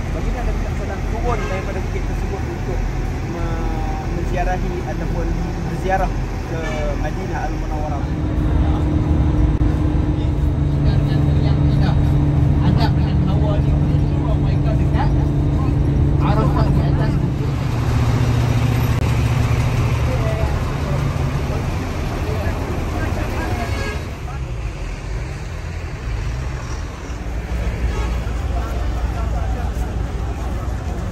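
Road vehicle engine running with voices over it. About a quarter of the way in, a loud steady engine drone comes up; a little past the middle it drops to a lower pitch, then fades back under the voices.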